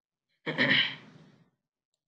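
A man coughs once: a short, sudden cough about half a second in that dies away within a second.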